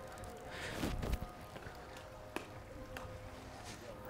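Quiet outdoor background with a faint steady hum, a brief soft rustle about a second in and a single sharp click a little past halfway.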